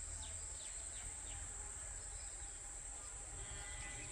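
Steady high-pitched insect drone of crickets or cicadas, with a few faint short bird chirps in the first second and a half, over a low rumble of wind or handling noise.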